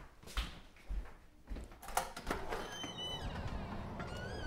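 Footsteps on a hardwood floor, then a house door opening with a sharp click about halfway through. After it, outdoor air with birds chirping.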